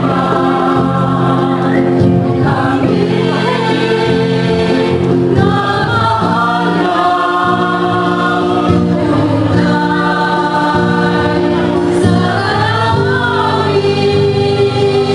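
A mixed choir of women and men singing together in long held notes.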